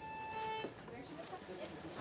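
A single steady electronic beep lasting about two thirds of a second, then faint room noise with small scattered sounds.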